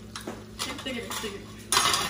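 Metal cooking utensils, tongs and a spoon, clinking against an aluminium pot lid as they are set down, a few light clinks and then a louder clatter near the end.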